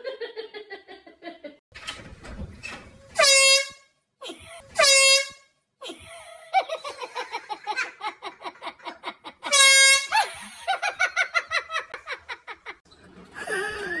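An air horn gives three short blasts, each about half a second long, at one steady pitch. Laughter runs between and after the blasts.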